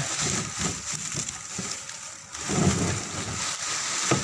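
Dry bamboo branches and leaves rustling and crackling as they are handled and pulled apart by hand, louder for a moment about two and a half seconds in.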